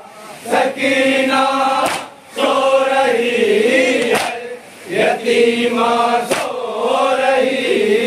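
A group of men chanting a Shia noha (mourning lament) in unison, in sung phrases with short breaks between them. Sharp slaps of hands striking chests (matam) land about every two seconds.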